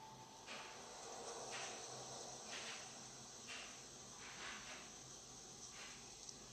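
Insects chirring in a faint, steady chorus that swells in even pulses about once a second.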